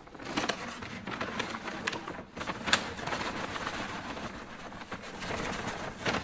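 Paper bag crinkling and rustling as it is handled, opened and tipped out into a plastic water jug, a dense run of small crackles with one sharper crack a little under three seconds in.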